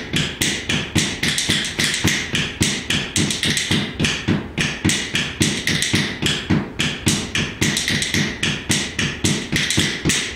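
Rhythm bones, a pair of wooden bones clacked in each hand, played in a quick, even old-time rhythm of sharp clacks.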